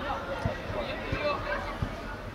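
Outdoor football-pitch ambience: indistinct voices of players and people along the touchline, with a few short, dull thumps.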